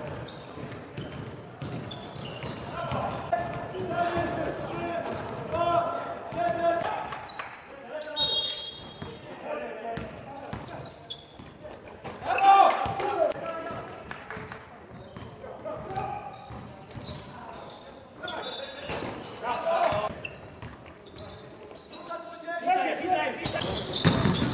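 Live sound of an indoor basketball game in a gym: the ball dribbled and bouncing on the hardwood court, with players shouting and calling out, all echoing in the large hall.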